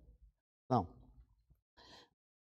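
Mostly a lull in a man's speech: one short spoken word, then a faint click and a short, soft intake of breath near the end.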